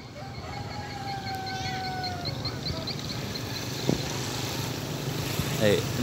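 Steady low outdoor background rumble with faint distant voices, and a single short knock about four seconds in.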